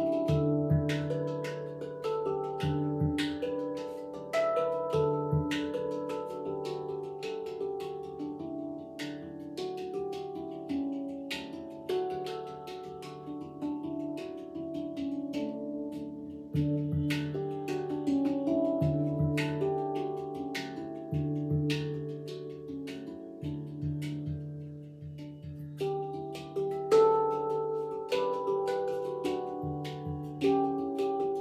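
Handpan played with the fingertips: a flowing melody of struck, ringing metal notes that sustain and overlap, with a deep low note sounding again and again beneath.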